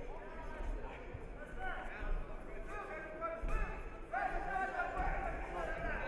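Several men's voices shouting over one another in a large, echoing sports hall, as coaches and spectators call out during a judo bout, with a few dull thuds. The shouting grows louder about four seconds in.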